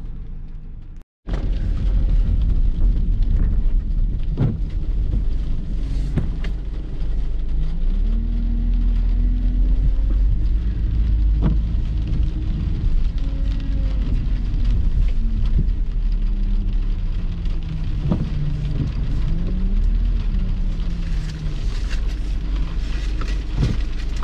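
Vehicle driving: a steady low road rumble with an engine note that slowly rises and falls as the vehicle speeds up and slows. The sound briefly cuts out about a second in.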